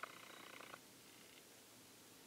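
Near silence: room tone, with a faint, short buzzing sound in the first second that fades away.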